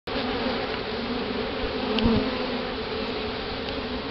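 Many honey bees buzzing steadily, a colony clustered over a caged queen, with a light knock about halfway through.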